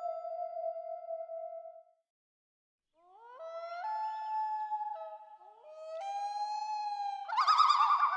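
Wolf howl sound effect: two howls that slide up in pitch and then hold, followed near the end by a louder, wavering howl. Before it, a chime rings out and fades in the first two seconds.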